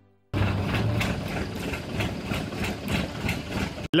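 An engine running steadily, with a faint regular beat. It starts abruptly about a third of a second in and cuts off just before the end.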